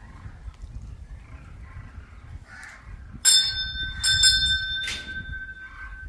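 A metal temple bell is struck three times, starting a little past three seconds in, about a second apart. Its ringing tone hangs on after the last strike.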